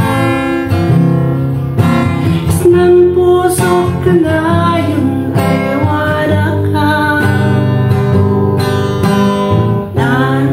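Acoustic guitar strummed steadily as accompaniment to a woman singing a Kankanaey love song.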